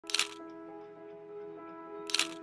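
A single camera shutter click right at the start, over soft background music of sustained notes.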